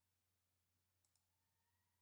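Near silence, with two very faint clicks in quick succession about a second in.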